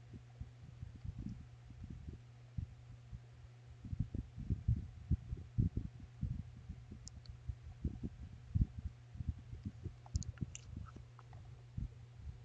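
Soft, irregular low taps and knocks, thickest from about four to six seconds in, over a steady low electrical hum.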